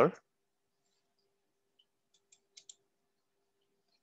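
Three or four faint, short clicks a little past halfway, from someone working at a computer, over a faint steady hum.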